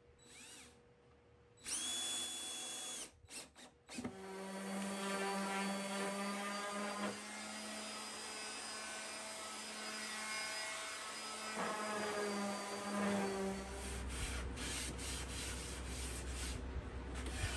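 A cordless drill drives a screw in one short burst about two seconds in, with a few brief blips after it. Then a random orbital sander runs steadily on wooden boards for about ten seconds, with a steady hum. Near the end, rubbing and scuffing sounds.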